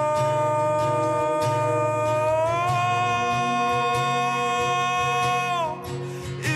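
Slowed, reverb-heavy indie folk song: a long held wordless female vocal note that steps up in pitch about two and a half seconds in and slides down and fades near the end, over guitar.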